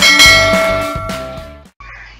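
Notification-bell chime sound effect, struck once and ringing out, fading away over about a second and a half.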